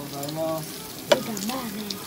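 Meat sizzling on a tabletop yakiniku grill, a fine crackling hiss, under background voices. A sharp click about a second in.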